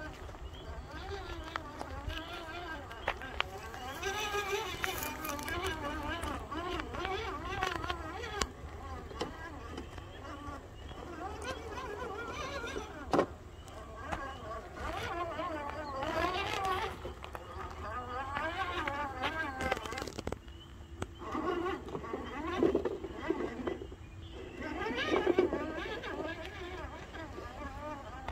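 People's voices talking indistinctly, unclear enough that no words come through, with a few sharp knocks or clicks along the way.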